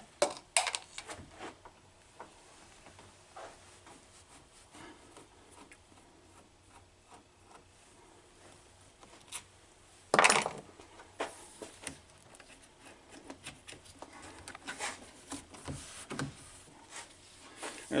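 Sparse small clicks and taps from a screwdriver and loose trim parts as small screws and a trim piece are taken off a Mercedes-Benz W116 door panel, with a louder scrape about ten seconds in.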